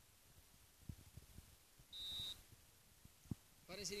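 A referee's whistle gives one short, steady, high-pitched blast about two seconds in. Around it, only faint low thumps on the microphone.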